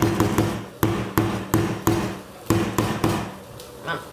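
Handheld immersion (stick) blender run in a series of short bursts, puréeing a chickpea mash in a bowl, with sharp knocks as the blender head is worked against the food and bowl. It stops shortly before the mash reaches a smooth consistency.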